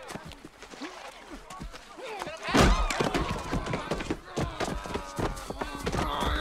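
Movie fight scuffle: grunts and vocal exertion from two men wrestling, with a heavy thud about two and a half seconds in and further scuffling hits on grass.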